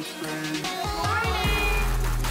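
Electronic dance music. The bass drops out for under a second at the start, then a short high sliding sound comes in about a second in.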